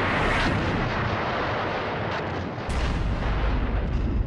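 Battle sound effects: dense gunfire and artillery, starting suddenly, with a few sharp shots through it. A deep low boom comes in about two and a half seconds in and rumbles on.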